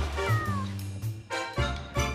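Short music jingle with a cat's meow sound effect, one falling meow about half a second in over a steady bass beat.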